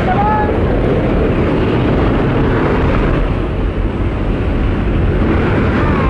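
Loud, steady noise of a skydiving jump plane's engine and the wind rushing through its open door, heard from inside the cabin. Brief voice calls rise over it at the start and again near the end.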